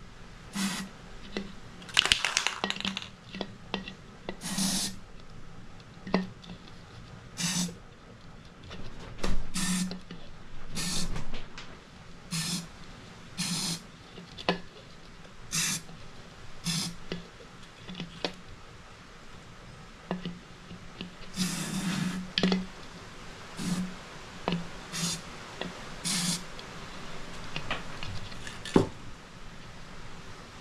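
Aerosol can of metallic silver spray paint hissing in a couple of dozen short bursts sprayed into a hollow plastic ornament ball, most bursts brief and a few lasting about a second.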